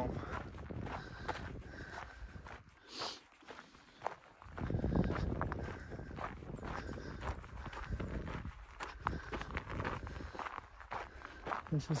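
Footsteps of a hiker walking on a rocky, gravelly dirt mountain trail, a steady series of steps.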